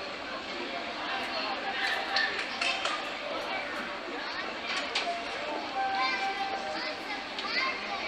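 Ambient field recording of a busy pedestrian shopping street, played back as an app soundscape: a crowd's overlapping chatter and voices, with a short held tone a little after the middle.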